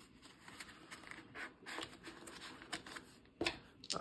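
Faint rustling of paper dollar bills being folded and handled over a plastic cash-binder sleeve, with one sharper tap about three and a half seconds in.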